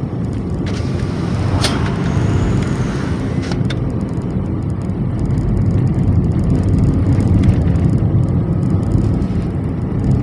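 Steady low rumble of a car's engine and tyres on the road, heard from inside the cabin while driving. Two brief clicks come about two and four seconds in.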